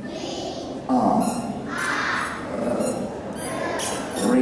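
A group of young children chanting phonics letter sounds and words together, one short call about every second.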